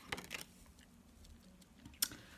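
Tarot cards being handled and laid on a tabletop: a few faint soft taps and slides in the first half-second, then near quiet.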